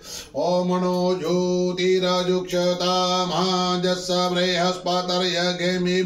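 A man chanting Sanskrit puja mantras in a steady, near-monotone sing-song, with short breaks for breath just after the start and at the end.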